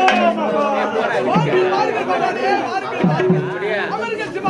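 Actors' voices on a street-theatre stage, speaking or declaiming, with a held steady instrumental note under them for about the first second.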